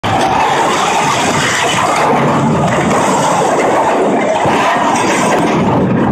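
Loud, steady, dense noise of a television action scene's sound mix: fire burning around a wrecked car.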